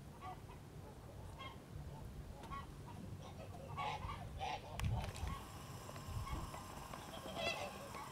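Domestic fowl calling in short, scattered calls, thickest about four seconds in and again near the end, with a single sharp thump just before the five-second mark.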